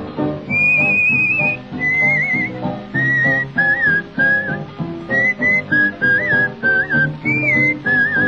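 A person whistling a wavering blues melody in short phrases over boogie-woogie piano and guitar accompaniment, on a 1935 blues recording.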